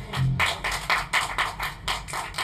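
A few people clapping steadily, about four or five claps a second, as a band's number ends; a short low bass note sounds at the very start.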